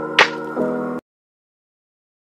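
Intro-animation sound design: a sustained electronic chord with one sharp snap-like hit a moment in. It cuts off suddenly about halfway through.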